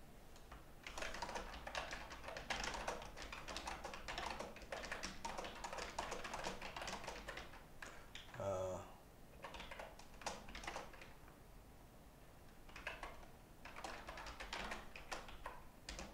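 Typing on a computer keyboard: rapid runs of keystrokes, pausing a few times between bursts.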